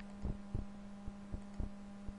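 A steady electrical hum in the recording, with faint low ticks repeating about three times a second.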